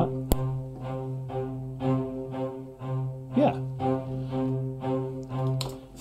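Sampled cellos from Spitfire Audio's Abbey Road Orchestra Cellos library play repeated short spiccato quarter notes, about two a second, on a low sustained pitch. They are played back at low velocity, so they are soft.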